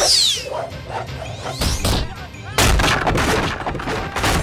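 Martial-arts fight sound effects: sweeping whooshes falling in pitch at the start, a hit about a second and a half in, then a sudden loud crash of impacts and debris from about two and a half seconds in, running on to the end.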